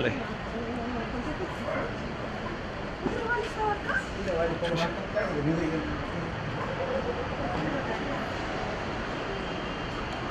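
Several people's voices talking and calling out, too indistinct to make out, over a steady low street rumble.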